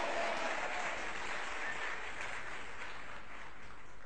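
An audience applauding: dense, steady clapping that eases slightly toward the end.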